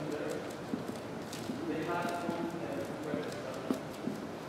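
Indistinct talking among a group of people in a sports hall, with scattered light taps and knocks throughout.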